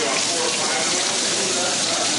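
Cold tap water running steadily into a stainless steel sink, splashing over a cleaned crab held in the stream as it is rinsed.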